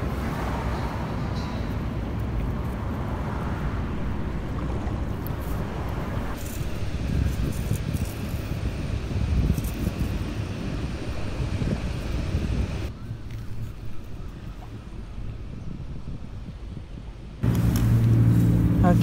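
Steady low outdoor rumble of wind on the microphone and distant traffic, with a few faint clicks. It drops to a quieter level about 13 seconds in.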